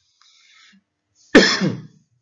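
A man's single cough, starting sharply about one and a half seconds in and trailing off with a falling pitch.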